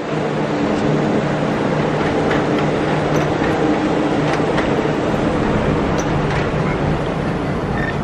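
Walt Disney World monorail train passing close overhead on its beam, a loud steady running noise with a low electric hum.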